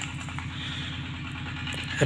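A motor or engine running steadily: a low hum with a fast, regular pulse.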